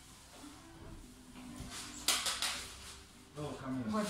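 Quiet, low talking, broken about halfway through by a short, loud burst of noise lasting about half a second. A voice comes in clearly near the end.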